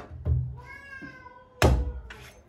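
A meat cleaver chops into a whole palm fruit on a wooden board with a loud, sharp impact near the end, after a duller thump about a quarter second in. Between the two a cat meows once, a drawn-out cry that falls slightly in pitch.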